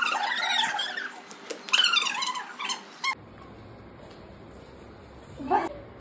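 A small child squealing and shrieking in high pitch during play, loudest for the first three seconds, with one more short rising squeal near the end.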